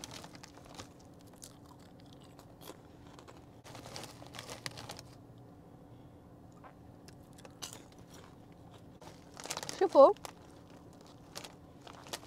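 Plastic snack bag crinkling as a hand rummages in it, with scattered crunches of Oreo-flavoured popcorn being bitten and chewed.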